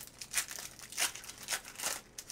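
Foil wrapper of a Panini Phoenix football card pack being torn open and crinkled by hand, in four short bursts about half a second apart.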